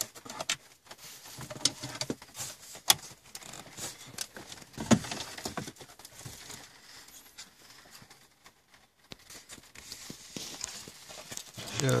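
Scattered clicks, knocks and rustling as a car stereo head unit is worked out of its dashboard opening and its plastic wiring connectors are handled, with a few sharper knocks among them.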